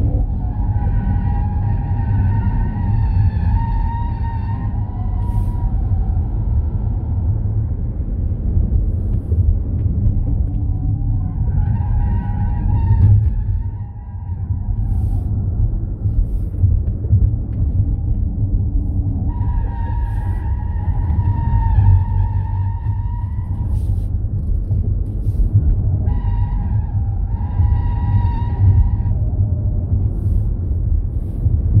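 Ford Mustang Mach-E GT at racing speed on a road course: a constant low rumble of wind and road noise, with tyres squealing through the corners in four stretches of a few seconds each.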